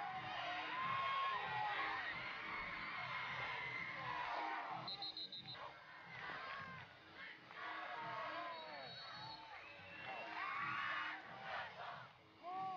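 Football crowd in the bleachers cheering and shouting, many voices overlapping, with a swell near the end.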